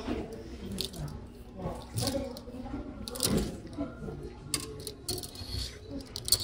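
Metal clip hangers clicking and sliding along a clothes rack, with fabric rustling as hanging linens are pushed aside one by one.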